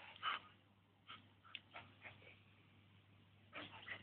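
A dog gives one short bark just after the start, then only faint scattered ticks and rustles as it runs on grass, with a small cluster of them near the end.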